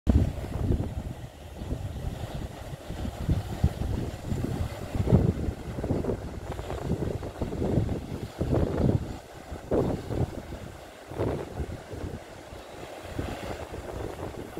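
Wind buffeting the microphone in uneven gusts on a seashore, a low rumble that swells and drops every second or so, with the wash of breaking surf beneath.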